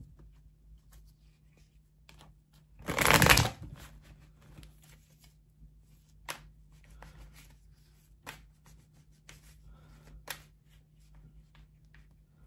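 Tarot cards being shuffled by hand: one loud riffle of cards about three seconds in, then scattered soft clicks and taps of cards being handled.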